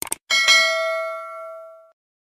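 Two quick clicks, then a single bell-like ding that rings with a clear tone, fades over about a second and a half and cuts off.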